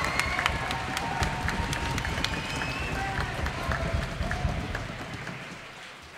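Audience applauding, with a few voices calling out; the clapping thins and dies away near the end.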